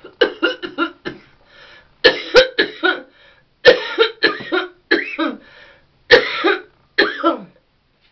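A woman coughing hard on bong smoke she has just inhaled: about six runs of short, harsh coughs, several in quick succession each time, with brief pauses between.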